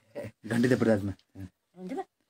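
Speech only: a few short bursts of a person's voice with brief pauses between them.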